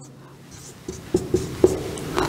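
Marker pen writing on a whiteboard: a few short, sharp strokes, starting about a second in.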